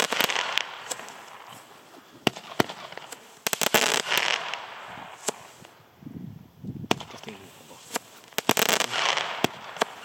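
Xplode XP013 category F2 firework battery firing: a string of sharp reports, with dense clusters of rapid pops at the start, about three and a half seconds in, and again near nine seconds.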